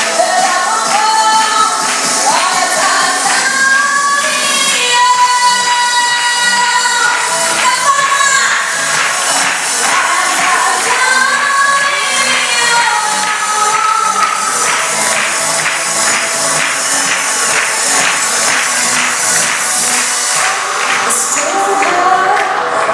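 A teenage girl singing a pop song into a microphone through the hall's sound system, over accompanying music with a steady beat.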